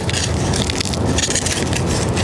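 Cooled New York-style pizza crust crackling and crunching as it is handled right up against the microphone, a dense run of small snaps. It is still crispy after cooling down.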